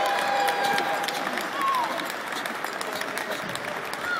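Audience applauding: many scattered hand claps over crowd noise.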